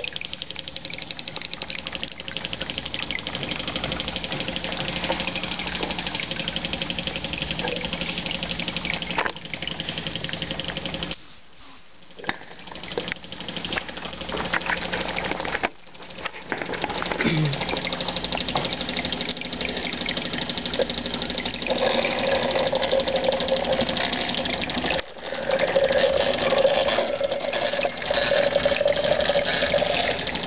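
Small model live-steam engines running, a fast, even mechanical chuffing and ticking with a hiss of steam and gas burner behind it. The sound cuts off briefly a few times and comes back.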